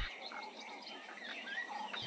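Faint outdoor ambience of small birds chirping, many short overlapping calls.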